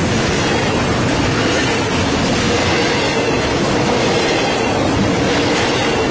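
Double-stack intermodal freight train rolling past at close range: the steady, loud noise of steel wheels running on the rails under loaded well cars.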